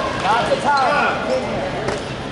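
Shoes squeaking in short chirps on a gym floor or mat, several in quick succession, over the steady chatter of a busy sports hall.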